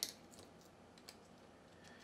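A few faint, light clicks from a small FPV video transmitter board and its wires being handled against a carbon-fibre quadcopter frame, over near silence.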